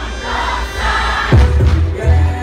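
Live music over a large outdoor PA with a big crowd singing along. The bass drops out for the first second or so, leaving mostly the crowd's voices, then the beat comes back in with a heavy kick a little over a second in.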